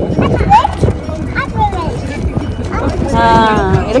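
Emus pecking feed pellets out of hand-held plastic bowls: rapid, irregular hard knocks of beaks on the bowls, with people's voices and a falling vocal exclamation near the end.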